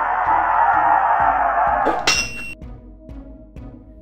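Animated logo sound effects: a steady whoosh for about the first two seconds, then a sudden bright shimmering chime whose ringing tones fade to a faint held note.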